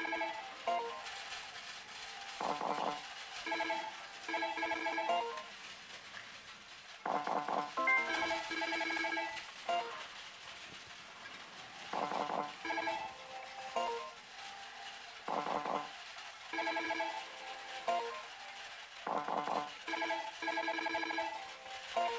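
Millionaire God: Kamigami no Gaisen pachislot machine playing its electronic sound effects and jingles through repeated spins in its GOD GAME mode, a short chiming pattern of tones coming back every three to four seconds as the reels are spun and stopped.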